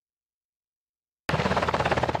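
Dead silence for just over a second, then a Black Hawk helicopter's rotor and engine noise cuts in suddenly, loud and steady with a rapid, even beat.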